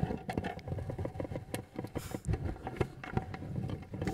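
A spectacled bear handling a camera trap up close, its fur and paws rubbing, scraping and knocking against the camera in quick irregular bumps over a low rumble of handling noise.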